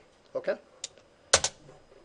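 Sharp clicks of a computer input as a presentation slide is advanced: a single click under a second in, then a louder quick double click about half a second later.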